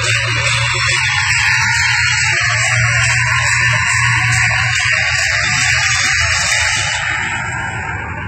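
A loud, steady hissing noise like static, with a low hum beneath, starting abruptly and thinning out near the end.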